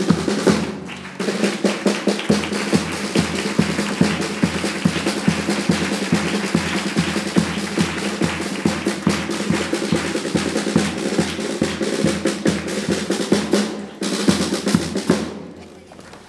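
A chirigota's carnival band plays an instrumental passage: a snare drum and bass drum keep a fast, even beat, with guitars. The drumming comes in about two seconds in, breaks off briefly near the end, and then fades out.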